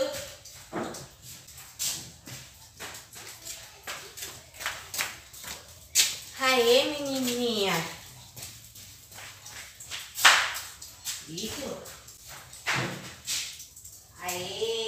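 Footfalls and sharp slaps on a concrete floor from a person in flip-flops and a dog moving over the course, with a loud slap about ten seconds in. A drawn-out call that rises and falls in pitch comes about six seconds in, and a shorter one near the end.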